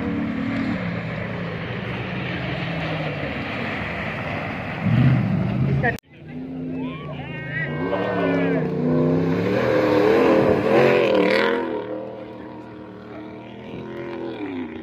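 Rally jeep engine running at speed on a sandy dirt track. After an abrupt cut about six seconds in, a jeep passes close by, its revs rising and falling as it charges past. It is loudest a few seconds later, then drops away.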